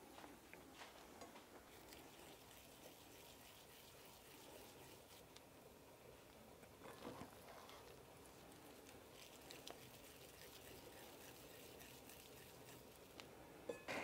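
Near silence: faint room tone with a few soft handling noises, one slightly louder cluster about seven seconds in.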